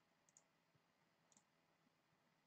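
Near silence: room tone, broken by two faint, short clicks about a second apart.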